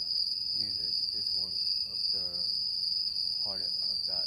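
A steady high-pitched tone rings without a break, with faint male speech under it.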